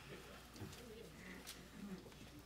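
A hushed hall, close to silence: faint low murmurs and a few small rustles from the seated audience.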